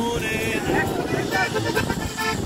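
Live norteño music between sung verses: an accordion playing an instrumental passage over a plucked tololoche (upright bass) and guitar, with people's voices mixed in.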